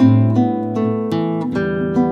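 Nylon-string classical guitar played fingerstyle: single plucked melody notes, a few a second, ringing over held bass notes, with a lower bass note entering near the end.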